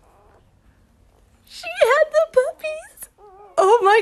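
A woman's high, wavering, emotional cries and whimpers, beginning about a second and a half in and rising to a louder wail at the end, after a faint, quiet start.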